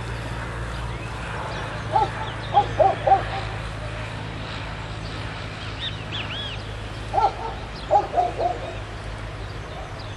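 Birds calling in several short bursts of quick notes, with a few higher chirps in the middle, over a steady low hum.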